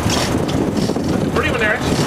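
Sportfishing boat's engine running under steady wind and sea noise, with a short call from a voice about one and a half seconds in.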